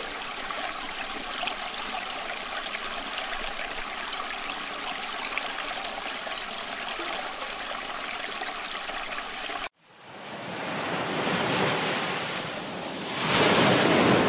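Steady rushing water ambience that cuts off suddenly about ten seconds in. After a brief silence, sea waves swell and wash in twice.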